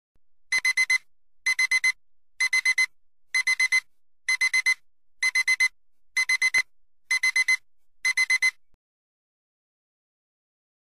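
Electronic alarm beeping: quick groups of four short high beeps, about one group a second, nine groups in all, then it stops shortly before the end.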